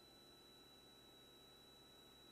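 Near silence: a faint hiss with a thin, steady high-pitched tone.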